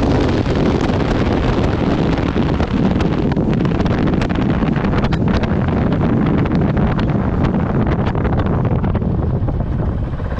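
Honda CRF450RL's single-cylinder four-stroke engine running at speed on a sandy track, with heavy wind noise on the helmet-mounted microphone and scattered ticks. Near the end the hiss thins as the bike slows.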